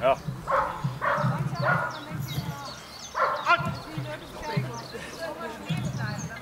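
A large shepherd-type dog barking excitedly while it runs an agility course: several short barks about half a second apart in the first two seconds, then another run of barks about three seconds in.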